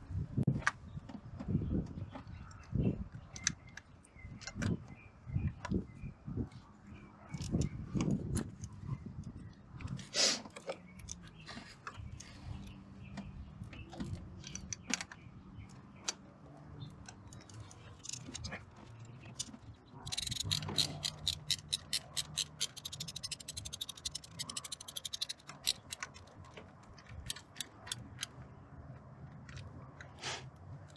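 Thumbwheel ratchet clicking fast for several seconds, about two thirds of the way through, as the EGR valve's mounting bolts are run in. Before it, scattered knocks and scrapes of tools and parts being handled in the engine bay.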